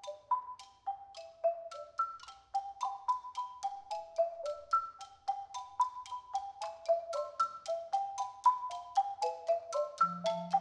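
Marimbas playing a quick melody of single struck notes in the middle-upper register, each note dying away quickly, about four notes a second. Near the end, a second part overlaps the melody.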